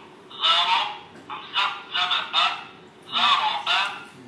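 Dany Ahsan-ul-Kalam smart Quran reading pen playing a recorded voice through its small built-in speaker, spelling out an Arabic word letter by letter in a string of short syllables with brief gaps. The voice sounds thin, with no bass.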